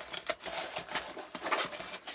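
Rustling and crinkling as a waxed canvas pouch is handled and a vacuum-sealed plastic packet is slid out of it, in irregular short crackles.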